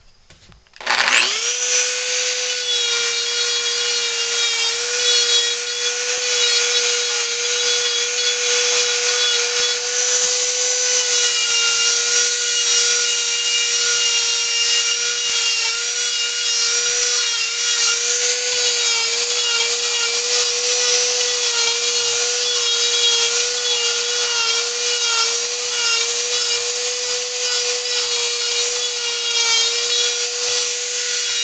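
Dremel rotary tool starting about a second in and running at high speed, a steady high whine with its carving bit grinding into wood. The pitch dips and wavers slightly at times as the bit bites into the wood.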